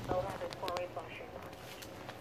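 A person's brief, unclear exclamation in the first second, with a few sharp clicks and a steady low hum underneath.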